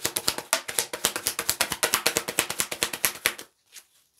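Tarot cards being shuffled overhand: a quick run of card clicks, about nine a second, that stops about three and a half seconds in.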